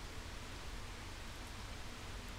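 Faint, steady hiss with a low hum underneath: the room tone and microphone noise of a voice-over recording with no one talking.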